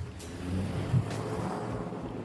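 Steady low rumble and hiss of background noise between spoken phrases, with a short knock about a second in.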